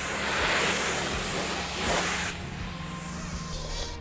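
High-pressure wash wand spraying water onto a car's body: a loud, steady hiss that drops to a softer hiss a little over two seconds in.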